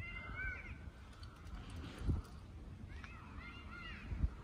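A bird calling in two short runs of arching, rising-and-falling chirps, one near the start and one about three seconds in, over a low rumble.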